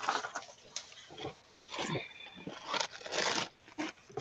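Paper rustling and crinkling in several short bursts as stiff, collaged art-journal pages are handled and turned.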